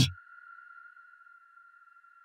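Faint background music: a steady, high, held drone of a few close tones with no beat, with the end of a woman's spoken word at the very start.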